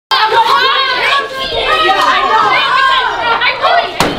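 Several children shouting and yelling over one another, a loud, unruly classroom din with no single voice standing out.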